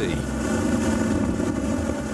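High-speed RIB's outboard engines running steadily at speed, a constant drone with spray and water rushing past the hull.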